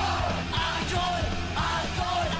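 Punk rock band playing loud and fast, with a shouted lead vocal and a crowd yelling along.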